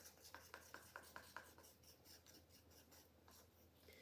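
Faint scraping of a wooden stick against the inside of a small plastic cup, a quick series of short strokes that stops about a second and a half in.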